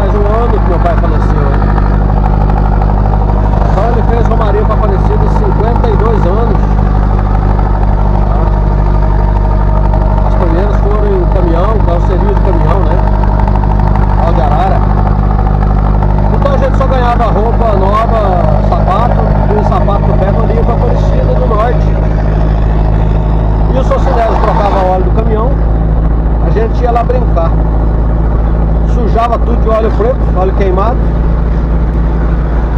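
Steady low drone of a vehicle's engine, heard from inside the cab while driving. Over it a voice sings a long, wavering tune with no clear words.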